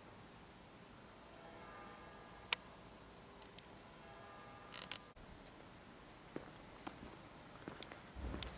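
Faint background ambience, nearly quiet, with a few faint steady tones and a single sharp click about two and a half seconds in.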